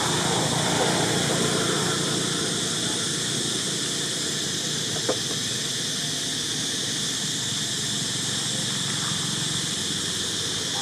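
Steady high-pitched hiss of outdoor background noise, with one short, sharp click about five seconds in.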